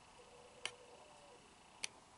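Near-silent room tone broken by two faint, sharp clicks a little over a second apart.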